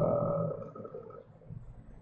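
The tail of a man's drawn-out "uh" fading out in the first second, then quiet room tone with a faint steady hum.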